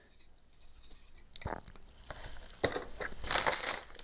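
Plastic packaging crinkling and rustling as cooler parts are unpacked by hand. It starts about a second and a half in with a couple of sharp clicks and grows busier toward the end.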